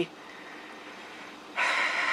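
A quiet pause, then about one and a half seconds in a man draws an audible breath in.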